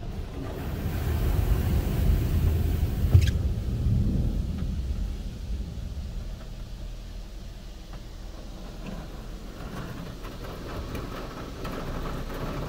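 Low rumble heard inside a car's cabin as the car creeps forward into a touchless car wash bay, stronger over the first few seconds, with a single sharp click about three seconds in.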